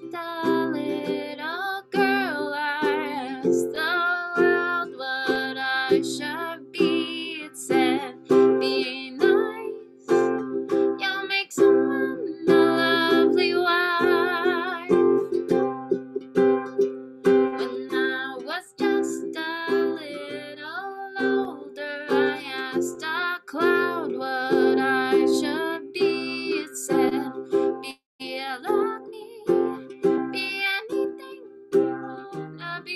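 A woman singing with vibrato on her held notes, accompanying herself on a strummed ukulele.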